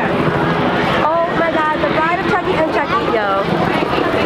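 Excited children's voices, high-pitched and overlapping, over a steady low hum.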